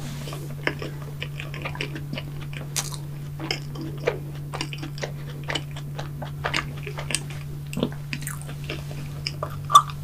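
Close-miked chewing of a mouthful of cream-and-strawberry Krispy Kreme donut: many soft, wet mouth clicks and smacks, with a louder click near the end. A steady low hum runs underneath.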